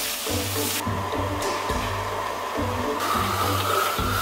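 Food sizzling in hot oil in a wok, with the steady rush of a strong wok burner; the hiss dips briefly and swells again about three seconds in. Background music with a low, pulsing beat plays underneath.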